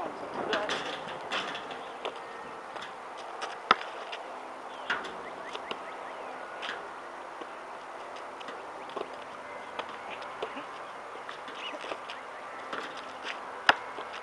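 A basketball striking the rim, backboard and court during repeated missed shots: scattered sharp knocks, a loud one about four seconds in and another near the end, with smaller knocks and clicks between.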